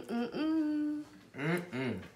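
Closed-mouth "mmm" hums of enjoyment from someone tasting fondue: a short hum, a longer steady one, then a wavering one near the end.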